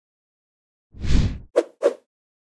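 Animation transition sound effects as the screen changes: a short whoosh about a second in, followed by two quick pops.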